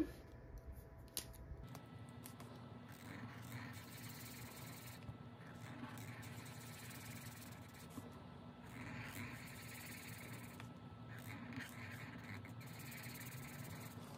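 Faint scratchy scribbling of a felt-tip marker on paper as small circles on a savings tracker are coloured in, in several short bouts with pauses between.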